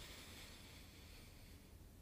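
Near silence: room tone, with a faint hiss of a slow in-breath through the nose that fades out about a second and a half in.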